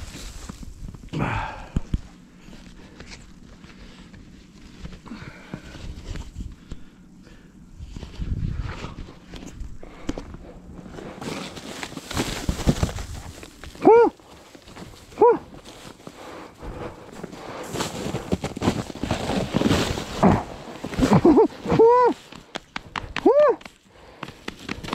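A foil-faced bubble-wrap insulation sheet crinkling and rustling as it is spread out over snow and sat on, with a thick run of crackles in the second half. Steps crunch in the snow, and a few short high calls cut through near the middle and near the end.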